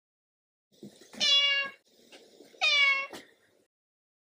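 A cat meowing twice, each meow about half a second long and the two about a second and a half apart.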